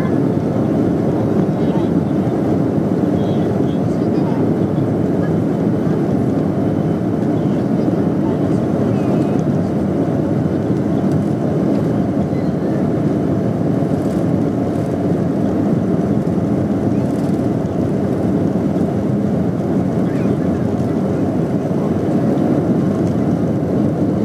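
Steady engine and airflow noise heard inside an airliner cabin as the plane taxis, an even low drone that does not change.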